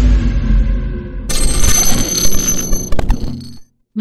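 Channel logo-reveal intro stinger: a dense low rumble with hiss, then from about a second in a bright, high-pitched ringing shimmer that ends in a sharp click and fades out just before the end.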